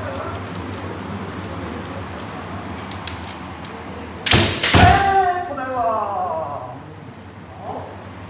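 A kendo strike: two sharp cracks about half a second apart, from a bamboo shinai hitting armour and a bare foot stamping the wooden floor, followed at once by a long shouted kiai that slides down in pitch.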